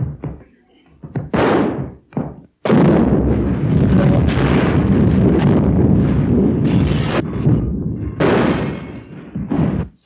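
Gas explosion sound effect on an old, narrow-band film soundtrack. Two short bangs come first, then a loud, continuous blast of noise that lasts about seven seconds and dies away near the end.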